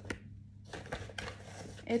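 Handling noise from a non-woven fabric tote bag rustling and a plastic pencil case being moved, with a few sharp plastic clicks.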